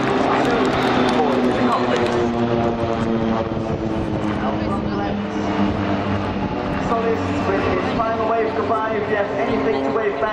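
A formation of Pilatus PC-7 turboprop trainers flying overhead: a steady propeller drone made of several held tones. A man's commentary over the public address is also heard, mostly in the second half.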